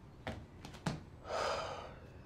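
Two soft footfalls, then a man's heavy breath lasting about half a second near the end.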